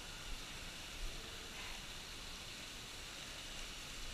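Faint steady hiss of thin water streams falling into the cenote pool, with two soft knocks about a third of a second and a second in.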